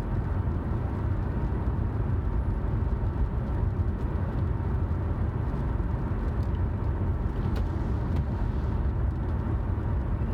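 Steady road and engine noise of a car driving at speed, heard from inside the cabin, with a couple of faint clicks near the end.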